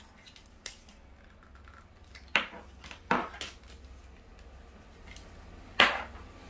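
Plastic parts of a clamp-on phone holder clicking and clacking as they are handled: a light click about half a second in, two sharper clacks in the middle, and the loudest one near the end.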